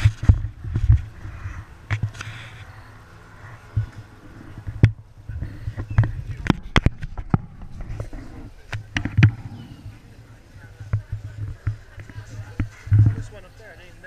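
Indistinct voices of onlookers, with sharp knocks and low bumps, densest in the middle, from the camera being handled as it pans.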